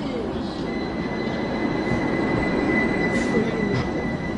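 Tram pulling in, its wheels squealing in one high steady tone from just under a second in, over a low rumble.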